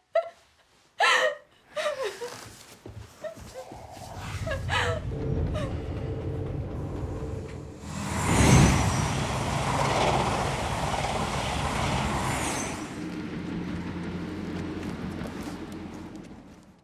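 Edited drama soundtrack: a few sharp knocks, then a low, steady drone with held tones. About halfway through, a loud rushing swell builds and dies away over roughly five seconds before the drone fades out.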